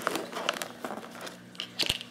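Oyster mushroom cluster being cut and pried off its substrate block: irregular crunching, tearing crackles, with a louder pair of snaps near the end.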